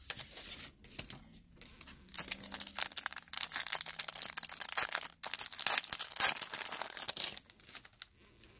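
A foil trading-card pack (2016 Donruss Optic) being torn open by hand, its wrapper crinkling and crackling densely for several seconds.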